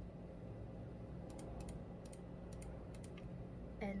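Typing on a computer keyboard: a few scattered keystrokes in two short runs, one in the middle and one shortly after, over a low steady hum.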